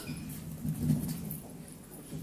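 Faint, muffled voices murmuring, low in pitch, fading out after about a second.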